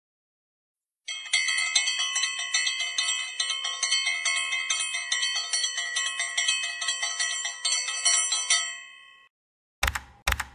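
A small bell rung rapidly and continuously, many quick strikes ringing together for about seven seconds before dying away. A short sharp click follows just before the end.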